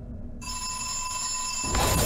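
Horror-trailer sound design: a low rumble, then a steady high ringing tone that cuts in sharply about half a second in, and a loud noisy surge near the end.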